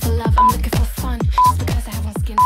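Workout interval timer beeping the last seconds of a countdown: two short, identical beeps a second apart, over electronic dance music with a steady kick-drum beat.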